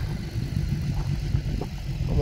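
Wind buffeting a phone's microphone outdoors, a steady, rough low rumble.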